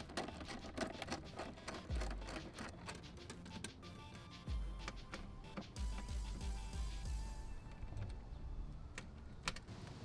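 Background music, with light clicking and rattling of plastic and metal as the stock air intake tube and its hose clamp are worked loose by hand and with a screwdriver. Clicks come thick in the first few seconds, then give way to a few dull low bumps as the tube is handled.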